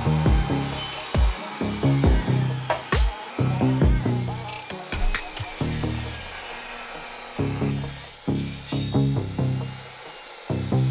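Background music with a rhythmic bass line, over a portable jobsite table saw running and cutting a board. The saw's hiss stops about a second before the end.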